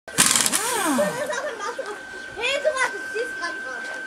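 Pneumatic impact wrench hammering briefly on a wheel nut at the start, its pitch falling as it spins down, followed by voices talking.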